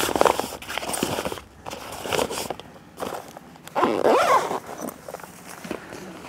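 Rustling and scraping of a Mares Cruise Roller dive bag's fabric being folded down and handled, in irregular bursts.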